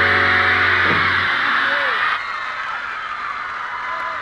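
A live rock band's final held chord on electric guitars and bass ringing out and stopping about a second in, under continuous high-pitched screaming from a crowd of teenage fans. The screaming carries on after the music stops.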